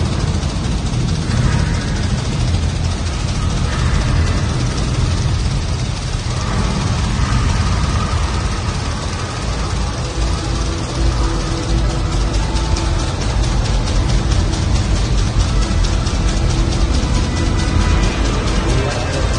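Re-created Saturn V rocket launch played loudly through a theater sound system: a deep, steady rumble that grows a dense crackle in its second half, with music over it.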